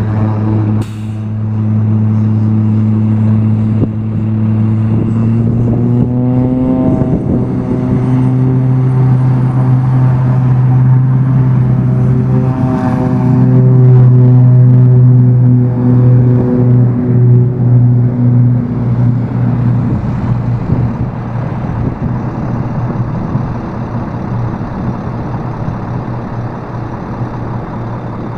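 Engine drone: a steady low hum with overtones that steps up in pitch about six seconds in, is loudest near the middle and eases off toward the end. A faint high whine rises over the first half.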